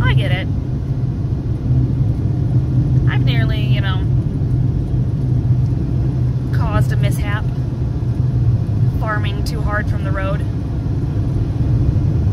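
Steady low rumble of road and engine noise inside a moving car's cabin. A few brief snatches of a woman's voice come at the start, around three and seven seconds in, and again near ten seconds.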